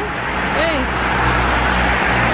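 A car passing on the road, its noise swelling to a peak about halfway through over a steady low rumble.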